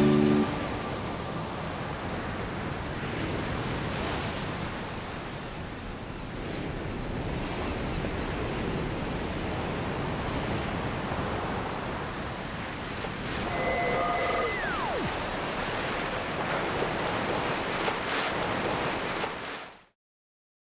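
Sea surf washing and breaking on a beach in a steady noisy wash, after a last held guitar chord dies away in the first half-second. About fourteen seconds in, a brief high tone sounds and falls away; the surf fades out near the end.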